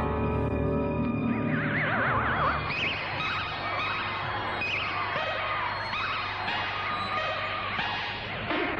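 Old film soundtrack music for a werewolf transformation scene, with wavering, warbling high tones over a low steady hum that fades out a few seconds in.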